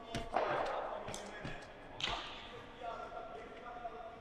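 Feet landing on a rubber indoor track during hurdle hops, echoing in a large sports hall; the two loudest landings come about a third of a second in and at two seconds.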